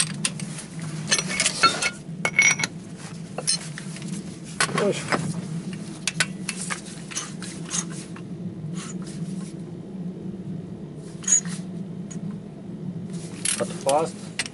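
Steel hand tools clinking and knocking against each other and against a bare differential assembly on a workbench: a run of sharp metallic clicks with short ringing, busiest at the start, around five seconds in and near the end, over a steady low hum.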